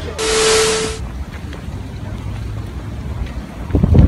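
A sharp burst of static-like hiss with a steady hum-like tone under it, lasting under a second, then low wind rumble on the microphone, with irregular bumps of camera handling starting near the end.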